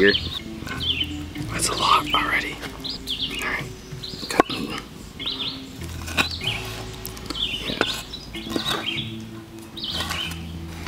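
Cleaver chopping meat into chunks on a wooden cutting board: two sharp knocks, about four and a half and eight seconds in. Background music with held low notes and birds chirping run underneath.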